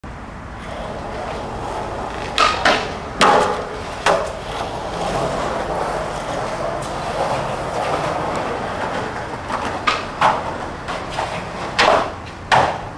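Skateboard wheels rolling on pavement, broken by sharp clacks of the board popping and landing: two close together about two and a half seconds in, another a little after three seconds and one near four, then a quicker run of clacks near the end.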